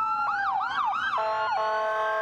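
Several emergency vehicle sirens, from an ambulance and police cars, sounding together. A slow rising wail overlaps fast yelping sweeps, and a steady blaring tone cuts in about a second in.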